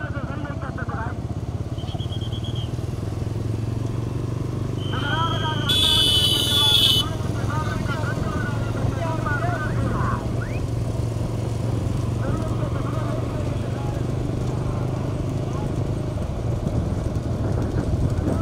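Motorcycle engines running steadily alongside racing bullock carts, with men shouting over them. About six seconds in there is a loud, shrill burst lasting about a second.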